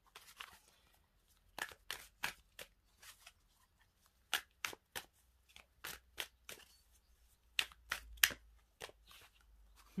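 A deck of oracle cards being shuffled by hand: irregular sharp card snaps and flicks, roughly one to two a second, with a few louder snaps near the end.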